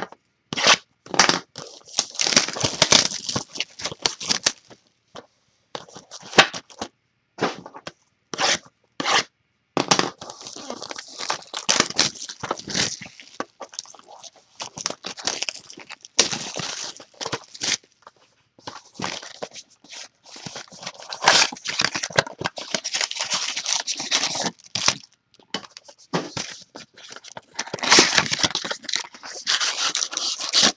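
Cellophane shrink wrap being torn off a trading-card box and crumpled, heard as irregular bursts of crinkling and tearing with short pauses. Foil card packs rustle as they are taken out of the box.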